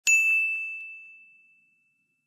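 A single bright ding, one clear high bell-like tone struck once at the start and ringing out, fading away over about a second and a half.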